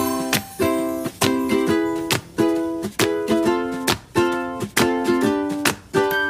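Background music: bright strummed string chords in a steady, even rhythm.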